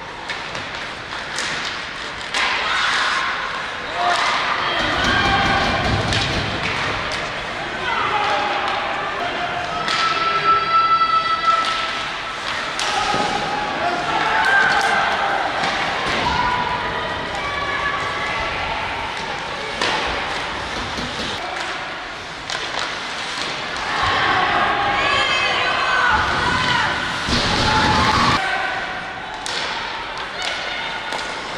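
Ice hockey rink sound during play: repeated sharp clacks and thuds of sticks, puck and bodies hitting the boards, with players shouting now and then.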